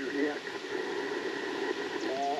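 Steady static hiss from an Icom IC-705 HF transceiver's speaker, the receiver's band noise between stations, with a faint voice-like trace just after the start.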